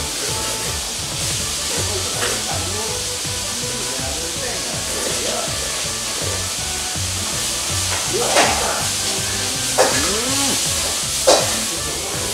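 Noodles being slurped in repeated pulls, with a few sharper sucks late on, over background music with a steady low beat.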